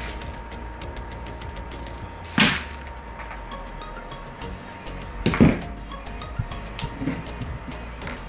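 Freshly roasted coffee beans rattling out of a Behmor 1600 Plus wire-mesh roasting drum into a plastic colander, with a stream of small clicks and two louder clatters about two and a half and five and a half seconds in. Quiet background music plays underneath.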